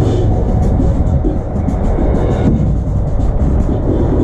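Indoor percussion ensemble's show music, front ensemble and electronics, heard loud from a camera on a marching tenor drum carrier, with a heavy low rumble dominating and short percussive hits on top.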